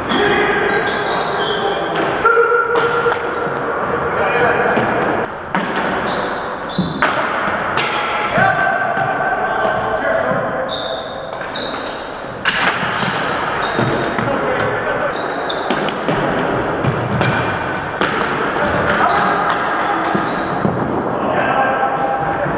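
Floor hockey play on a gymnasium's hardwood floor: plastic sticks clacking and knocking on the floor and against each other, sneakers squeaking, and players' voices calling out, all echoing in the large hall.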